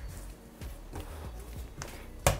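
Hands kneading soft yeast dough on a wooden board: a few faint dull thuds, with a short light click near the end.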